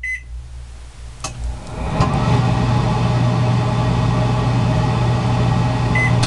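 Microwave oven heard from inside its own cavity: a beep, a click about a second in, then the oven running, its hum jumping about two seconds in to a loud steady drone. A second short beep sounds near the end.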